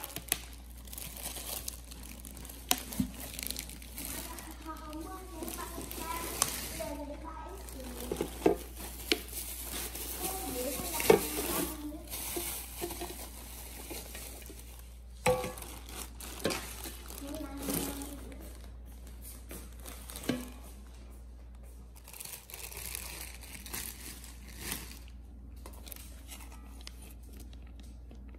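Plastic packaging crinkling and rustling as a stainless steel pan and its glass lid are unwrapped, with scattered sharp clicks and light knocks from handling the pieces.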